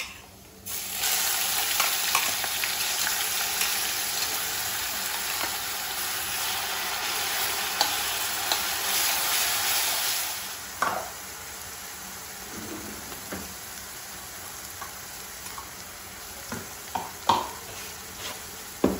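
Onion-chilli paste dropped into hot oil in a black kadai, sizzling loudly from just under a second in. About ten seconds in the sizzle dies down to a quieter frying, broken by scrapes and clinks of a steel spatula stirring against the pan, more frequent near the end.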